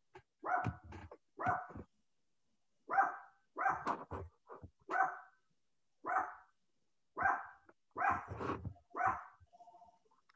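A dog barking, about a dozen short barks at an irregular pace.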